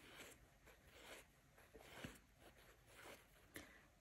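Near silence: room tone, with a few faint rustles of thread being pulled through a hand-crocheted chain.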